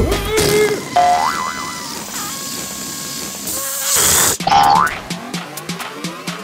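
Cartoon sound effects over background music: a springy boing about a second in, a long whoosh, and a rising cartoon tone near the end.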